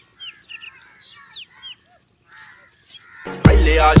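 Birds calling, with short downward-sliding whistles and harsh chattering notes. About three seconds in, loud music with a heavy bass beat cuts in and drowns them out.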